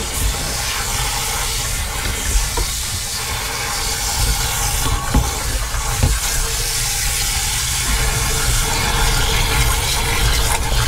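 Garden-hose spray nozzle jetting water into a motorhome's waste water tank, a loud, steady rushing spray as the grimy tank is rinsed out. Two brief knocks come about five and six seconds in.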